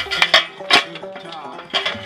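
Sharp metallic clicks and clinks from steel brake shoe return springs and hardware being hooked onto the shoes of a '55 Ford drum brake, several in quick succession near the start, one about midway and a couple near the end.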